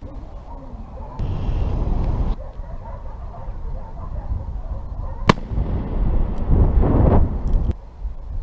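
Wind buffeting an action camera's microphone in strong, irregular low gusts, with one sharp click a little past the middle.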